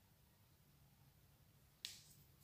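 Near silence with a low hum of room tone, then one sharp click near the end as the mascara wand is put away.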